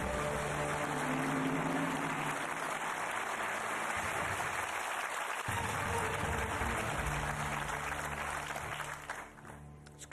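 Studio audience applauding over held low notes of game-show music, marking a correct answer. It fades out about a second before the end.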